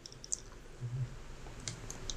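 Quiet pause holding a few faint, short clicks, a small group near the start and another near the end, with a brief low hum about a second in.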